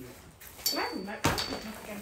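Two sharp metal clinks about half a second apart, each ringing briefly with a high tone: a metal ring knocking against a metal stand. A short whiny vocal sound rises and falls between them.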